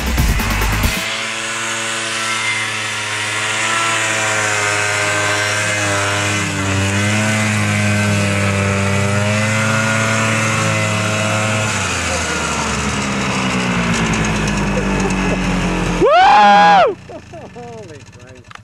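A Ski-Doo snowmobile engine idling steadily with small wavers in speed, cut in after about a second of music. Near the end it gives one short, loud throttle blip that rises and falls in pitch.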